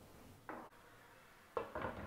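Soft cookware sounds: a wooden spatula knocking in a non-stick kadai and a glass lid being set on the pan. There is one brief knock about half a second in, then a short cluster of clinks near the end.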